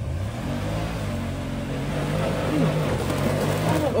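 Side-by-side UTV engine running hard under load as it climbs a steep dirt hill, its note fairly steady and growing louder toward the end.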